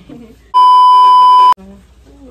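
A loud, steady single-pitch beep about a second long, a censor bleep laid over the audio, with the original sound muted beneath it; it cuts off suddenly with a click.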